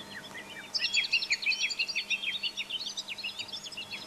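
Birdsong played as a stage sound effect: many small birds chirping in quick, short, high notes, starting just under a second in.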